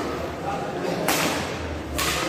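Badminton rackets striking the shuttlecock in a rally: a sharp hit about a second in, with a short smear after it, and another hit at the end.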